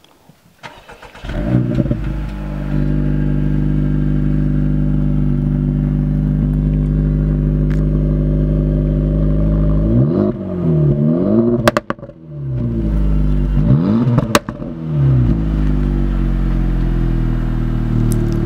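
Acura Integra Type S's turbocharged 2.0-litre four-cylinder starting about a second in and settling into a steady idle through its triple centre exhaust. Later it is blipped through a few quick revs that rise and fall, with two sharp cracks, before dropping back to idle.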